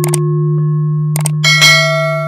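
Logo-intro sound effect: a steady low synthesized hum with short clicks, then a bright, bell-like chime about one and a half seconds in.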